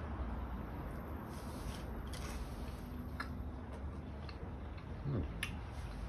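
A man chewing a bite of smoked meat: faint, scattered mouth clicks over a steady low background hum.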